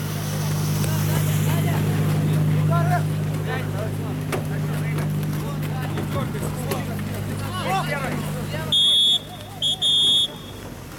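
Faint distant shouts from players over a steady low rumble, then a referee's whistle blown twice near the end, loud and high-pitched, marking the end of the first half.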